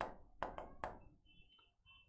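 Pen tapping against a smart-board screen while writing: four short, sharp taps within the first second, then faint.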